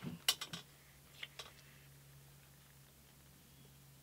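Several light clinks and knocks in the first second and a half as a thin walnut guitar-side strip is worked by hand against a hot metal bending iron, then only a faint steady low hum.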